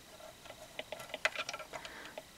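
Light, irregular clicks of a metal loom hook and fingers against the plastic pegs of a KB rotating double knit loom as yarn loops are worked over the pegs.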